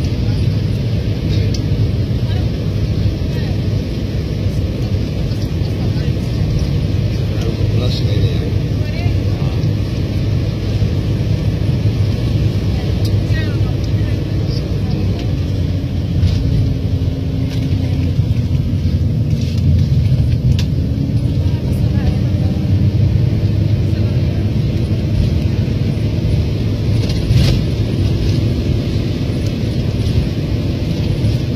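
Car engine and road noise heard from inside the cabin while driving: a steady low rumble.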